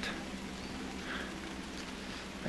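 Quiet, steady outdoor background noise in a damp forest, with no distinct event apart from a faint short sound about a second in.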